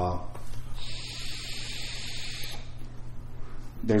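A drag on a Morpheus V2 vape tank: a steady hiss of air drawn through its airflow holes and over the firing coil, lasting about two seconds, with the airflow being compared between settings. The hiss fades into a fainter rush before speech resumes.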